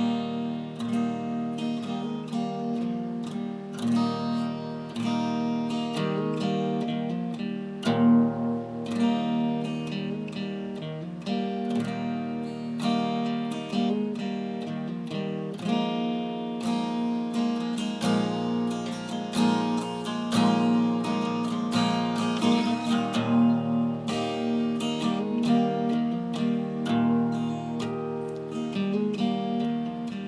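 Acoustic guitar in open D tuning, capoed at the first fret, strumming a simple chord progression with hammer-ons worked into the chords. It rings open and resonant.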